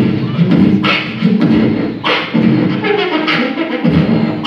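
A group of beatboxers performing into handheld microphones: a steady beat with a sharp, hissy snare-like hit about every second and a bit, over continuous low hummed bass lines.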